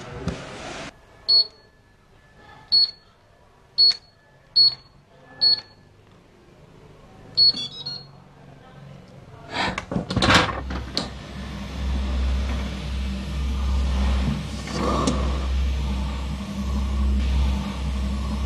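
Electronic safe's keypad beeping: five short high beeps as keys are pressed, then one more beep a little later. About ten seconds in, a loud metallic clunk as the safe's handle is turned, followed by a steady low hum.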